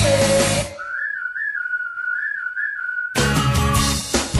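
A rock song in which the band drops out just under a second in, leaving a lone whistled melody with quick warbling turns for about two seconds. The full band crashes back in near the end.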